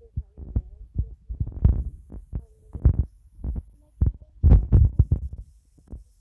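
Wind buffeting a phone's microphone in gusts: irregular low rumbling thumps, loudest about four and a half seconds in.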